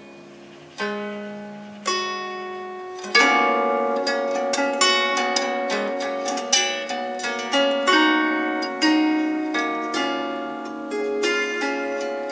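Ten-string kantele-style zither with metal strings and an African mahogany body, plucked by hand: two single notes about one and two seconds in, then from about three seconds a flowing run of plucked notes that ring on and overlap, with a clear bell-like sustain.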